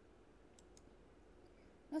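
Two faint, short clicks about a quarter second apart in a quiet pause, then a woman's voice starts speaking near the end.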